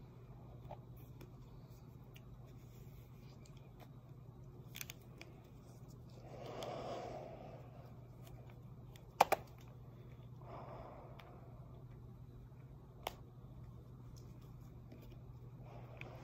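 Faint handling of a rubber half-face respirator and its duct-taped conduit hose as it is put on and strapped up: a few sharp clicks and two soft rushing swells over a low steady hum.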